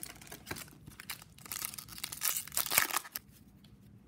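Foil wrapper of a 2002-03 Upper Deck Series 2 hockey card pack crinkling and tearing as it is handled and opened. The loudest rustling comes in the middle, then it dies down near the end.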